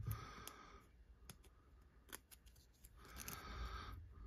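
Faint handling of a thin plastic card sleeve that has just been slit open: scattered light clicks, about half a dozen, over a soft rustle.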